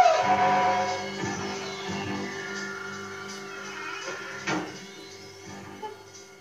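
Horror-film soundtrack music: a sustained, ominous chord slowly fading away, with a brief knock about four and a half seconds in.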